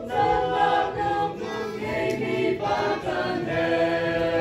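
Church choir of young men and women singing a hymn without accompaniment, several voices holding long notes together.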